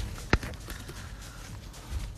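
A single sharp knock about a third of a second in, over low, steady background sound.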